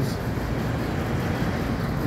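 Road traffic on a town street: vehicles passing, a steady even noise with no clear single event.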